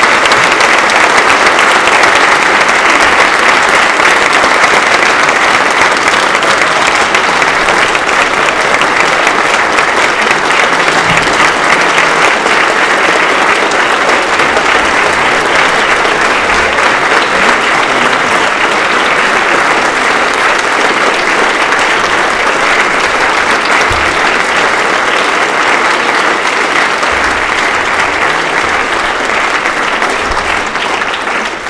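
Large auditorium audience giving a standing ovation, loud sustained applause of many hands clapping at once.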